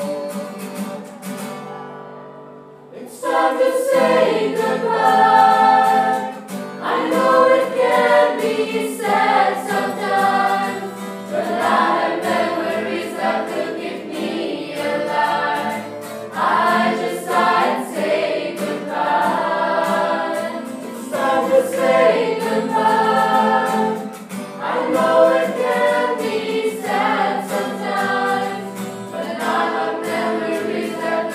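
A group of voices singing an original farewell song together as a choir. The singing dips briefly about two seconds in, then comes back in full.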